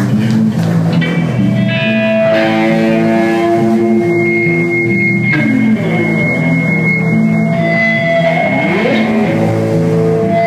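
Live band music from electric guitar and electric bass, loud and steady, with long held notes and a note sliding upward near the end.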